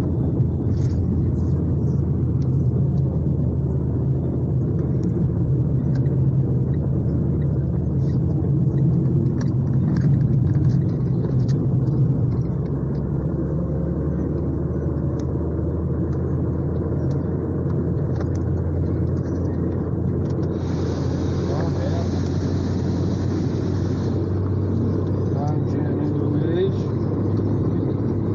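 Car interior while driving: steady low engine and road rumble, with a few seconds of hiss in the last third.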